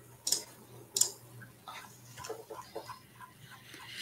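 Two sharp clicks about a second apart, then faint scattered sounds over a low steady hum.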